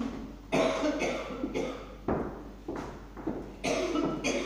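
A person coughing, about four short, sudden coughs spread through the few seconds.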